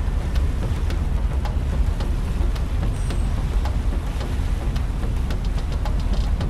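Wind buffeting a camera microphone on the deck of a moving river cruise boat: a steady low rumble with frequent small clicks throughout.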